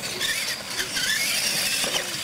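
Electric R/C monster trucks running, their motors and gears whining in a pitch that slides up and down with the throttle.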